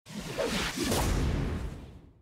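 Whoosh sound effects of a TV channel's animated logo ident: a loud swell with a few rising sweeps over a deep low rumble, fading out over the last half second.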